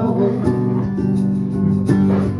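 Acoustic-electric guitar strummed steadily, with a tube shaker keeping time, in a pause between sung lines of a live song.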